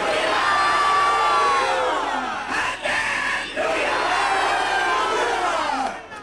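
A large congregation of worshippers calling out loudly all at once, many voices overlapping and gliding up and down, with a couple of brief dips.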